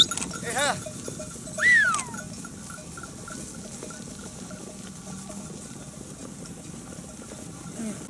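A flock of sheep on the move, with two loud bleats in the first two seconds, the second rising and then falling away. Faint bells clink from the flock throughout.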